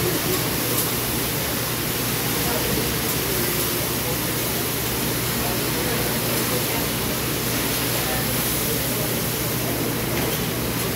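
Noodles and sauce sizzling on a hot flat-top griddle as they are stirred with spatulas: a steady hiss, with indistinct voices in the background.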